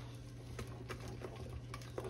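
Faint, scattered soft clicks and scrapes of a spatula stirring thick batter in a glass mixing bowl, as orange zest is folded in by hand.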